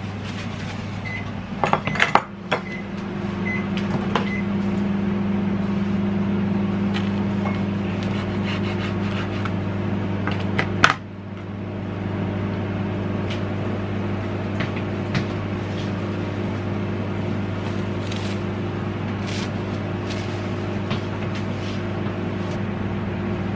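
A steady electric hum from a running kitchen appliance runs throughout. Over it come knife and handling knocks on a wooden chopping board, the loudest a sharp knock about eleven seconds in as a slice of mortadella is cut off, then light crinkling of plastic film as the casing is peeled from the slice near the end.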